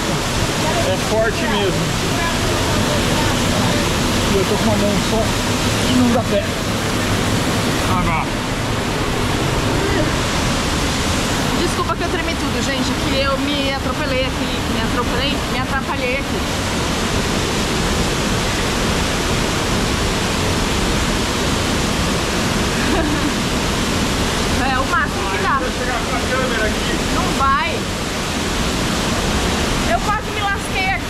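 A small waterfall pouring into a rock pool, with the water churning in the pool. It is heard up close at water level as a loud, steady rush.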